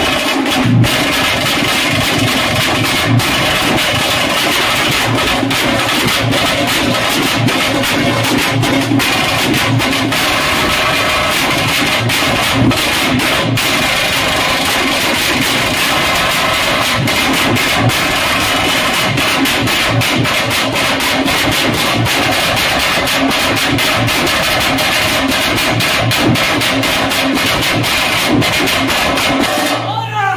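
Veeragase dance drumming: large double-headed drums beaten with sticks in a fast, dense, unbroken rhythm, loud with many close-packed strokes.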